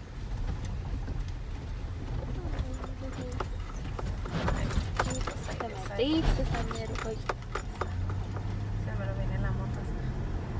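Car interior while driving: a steady low engine and road rumble that grows a little stronger near the end, with several sharp clicks and faint voices in the middle.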